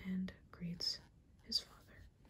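Only soft-spoken, partly whispered speech: a few short syllables with hissing s-sounds.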